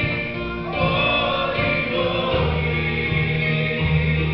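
Mixed church choir singing a slow gospel song in sustained notes, led by a male singer on a microphone, with guitar accompaniment.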